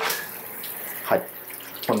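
Hotel bathroom hand shower running, its water coming on at once and spraying steadily, at a pressure that seems adequate.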